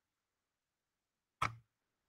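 Dead silence from a video call's gated audio, broken by one short burst of noise about a second and a half in, just before speech resumes.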